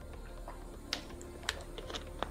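A few sparse, light clicks and taps from about a second in, over a faint low steady hum.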